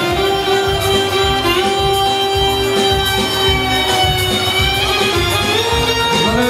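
A live band playing loud, fast dance music: a violin-like lead melody holds one long note for a few seconds and then winds on, over a steady driving beat.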